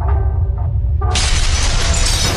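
Produced sound effect for an animated logo sting: a steady deep rumble, then about a second in a sudden loud crash of shattering debris as the wall breaks apart, continuing as a crumbling rush.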